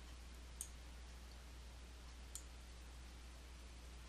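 Two faint computer mouse clicks, about half a second in and again past two seconds, over a low steady hum.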